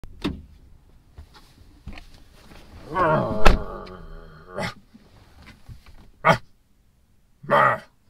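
A man climbing into a Dodge Charger's driver's seat with a drawn-out groan, and the car door shutting with a loud thunk about three and a half seconds in. A few clicks follow, and there is a short vocal grunt near the end.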